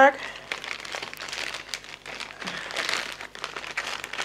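Clear plastic bag crinkling and rustling irregularly as it is handled with a coiled LAN cable inside.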